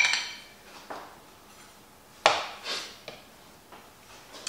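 Small kitchen clatter: a sharp knock with a short ring as a metal jar lid is set down on a wooden chopping board, then a few lighter metal clinks from a teaspoon, the loudest about two seconds in.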